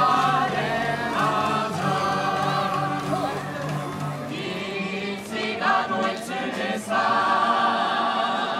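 A group of voices singing a song together live, as music for a circle dance, with a low note held underneath through the first few seconds.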